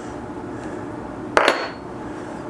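A metal hand tool is set down on a stone slab about one and a half seconds in: a quick double clack with a brief metallic ring, over a steady low room hum.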